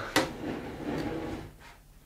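Aluminium T-track extrusion set down on a perforated bench top with a sharp knock, then slid across it with about a second of scraping that fades out.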